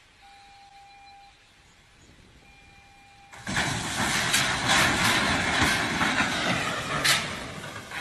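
Two steel ship hulls colliding. A sudden loud crunching and grinding starts about three seconds in, full of sharp bangs, with one strong crack near the end. Before it a faint steady tone sounds twice.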